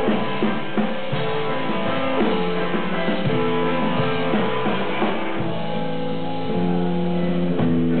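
Rock band playing live without vocals: guitars holding sustained chords over drums.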